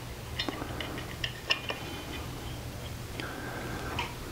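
Allen key turning the cap screw on a jigsaw's steel base plate as the plate is locked back at 90 degrees: a handful of small metallic clicks and ticks in the first two seconds, then little more than a low hum.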